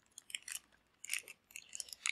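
Crinkling and crackling of a small plastic foil blind-box bag as it is pulled and torn open by hand, in short irregular bursts.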